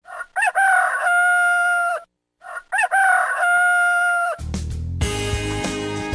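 A rooster crowing twice, each crow a rising call that ends in a long held note. Guitar music starts in just after the second crow.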